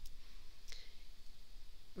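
A single short click about two-thirds of a second in, over a faint low hum.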